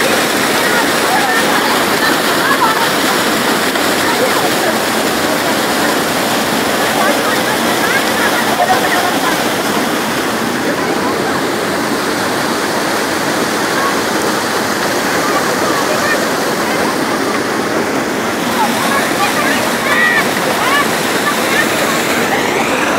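Loud, steady rush of flash-flood water running close by after a cloudburst, with voices faint beneath it.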